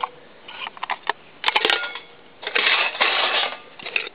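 Metal cooking pot clinking and scraping against the inside of a galvanized-steel camp stove as it is lifted out. There are a few light clicks, then a quick cluster of sharp clinks about a second and a half in, then a longer scraping rustle.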